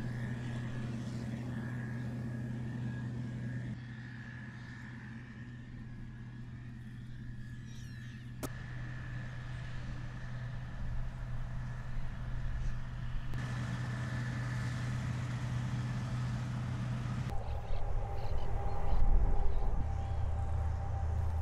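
Combine harvester and tractor engines running steadily in the field, a constant low hum. The sound changes abruptly a few times, and there is one sharp click about halfway through.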